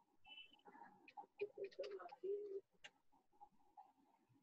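Faint bird calls, with a held low note about two seconds in and a brief high chirp near the start, among a few small clicks, heard through a video-call microphone.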